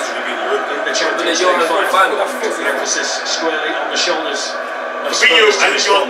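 Indistinct men's voices talking over one another, with laughter about a second in and a louder outburst of voices near the end.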